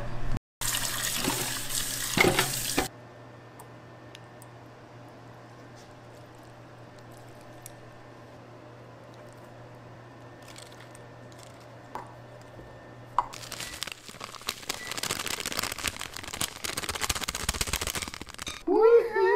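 Kitchen tap water running into a sink in two spells: a short one of about two seconds near the start and a longer, splashier one in the last five seconds. Between them it is quiet but for a low steady hum.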